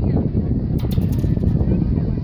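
Indistinct chatter of spectators in the stands, with no clear words. A brief run of sharp clicks sounds about a second in.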